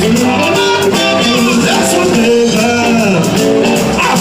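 Live blues band playing, with a blues harmonica cupped to a vocal microphone wailing bent notes over electric guitar, bass and drums.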